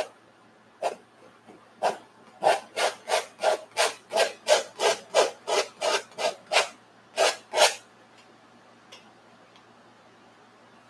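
A bristle brush stroked across a stretched oil-painting canvas: a few spaced strokes, then a quick, even run of about three short strokes a second, then stopping.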